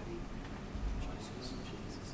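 Quiet room sound with a low thump about a second in, followed by a few soft, short clicks and rustles.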